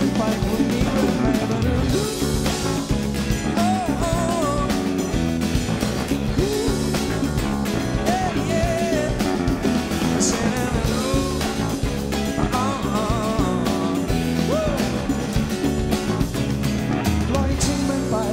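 Live band music: drums, bass and guitars playing an instrumental passage of a pop-rock song, with a melody line that bends and wavers over a steady beat.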